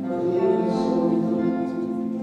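A man singing a slow song live, accompanied by a grand piano, with long held notes.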